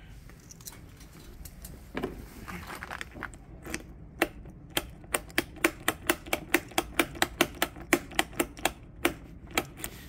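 Key working in a newly fitted ignition switch lock on a Benelli scooter's plastic front panel: a few soft knocks, then a quick run of sharp clicks, about four a second, over the second half.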